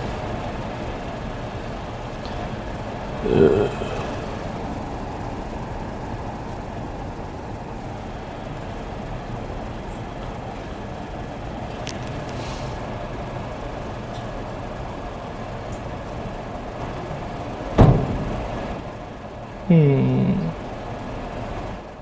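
Steady hum of room noise in a lecture room, with a short murmur about three seconds in, a single sharp knock near the end, and a brief voiced sound just after it.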